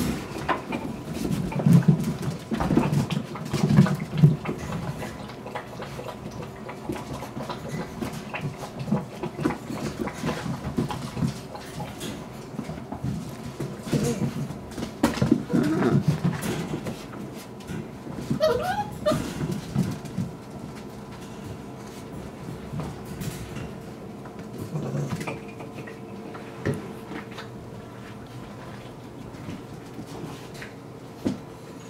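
Puppies moving about on a tile floor, with scattered small clicks and scuffles from their claws and paws, and one short wavering high cry just past halfway.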